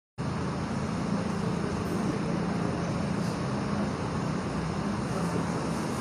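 Steady background noise, a continuous low hum with hiss, picked up by the microphone.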